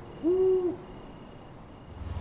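A single soft hoot, owl-like, about a quarter second in and half a second long, its pitch rising slightly and then falling. Faint high chirping repeats steadily underneath as the lo-fi track ends.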